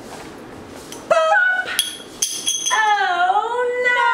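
Women's voices exclaiming: a short, sharp 'pop!' about a second in, then a long, drawn-out 'oh no' whose pitch dips and then rises.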